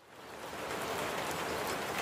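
Recorded rain ambience, an even hiss of steady rainfall that fades in from silence over the first half second and then holds steady.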